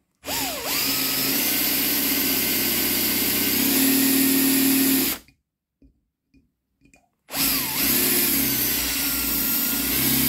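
Power drill drilling out a rivet in a die-cast metal toy truck cab. It runs twice, for about five seconds and then for about four, each run opening with a rising whine as the motor spins up, with a short pause between.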